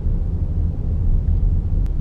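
Steady low rumble of a car driving slowly, heard from inside the cabin, with one brief click near the end.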